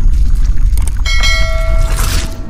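Logo-intro sound effects: a heavy, deep rumble, with a bright bell-like chime ringing out over it from about a second in, and a whoosh of hiss right at the end.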